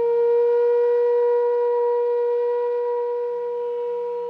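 Bansuri (bamboo transverse flute) holding one long, steady note, easing slightly in loudness near the end, after a short rising run of notes.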